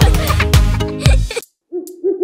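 Upbeat children's song music that cuts off about a second and a half in; after a short gap, a cartoon owl hoot begins near the end, one held, wavering note.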